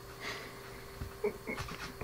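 A man's heavy out-breath as he stretches, followed by a few faint clicks and rustles.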